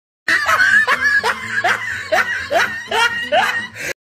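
A person laughing in a long run of "ha"s, each falling in pitch, about three a second, stopping abruptly just before the end.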